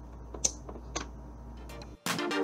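Plastic water bottle pressed onto a canvas and lifted off: two sharp plastic clicks, the louder about half a second in and the other about a second in, with a few faint ticks after, over a low steady hum.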